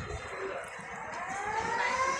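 Busy riverside launch-terminal ambience with background voices. About a second in, a pitched tone starts and rises steadily in pitch, like a siren or a drawn-out call.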